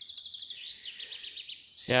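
A bird singing a fast, high trill of quickly repeated chirping notes.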